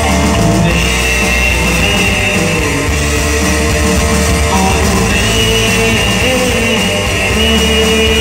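Live band music with electric guitar and keyboard over a steady rock beat, with long held high lead notes twice.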